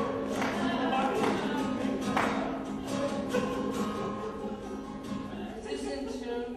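Acoustic guitar being strummed, chords ringing on between strokes that come about once a second.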